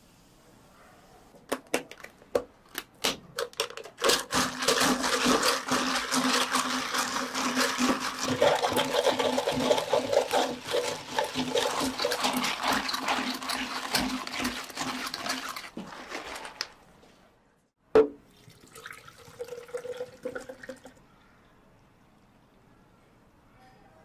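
Carbonated soda poured from a bottle over ice into plastic cups: a few clicks of ice first, then about twelve seconds of dense fizzing and crackling that fades away. A single sharp click comes near the end.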